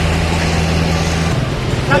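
An engine idling steadily: a low, even hum under a broad noisy wash, with the hum changing pitch pattern about a second and a half in.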